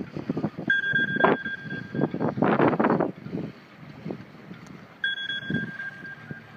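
Wind buffeting the microphone in uneven gusts. A steady high tone sounds twice through it: from about a second in for a second and a half, and again near the end.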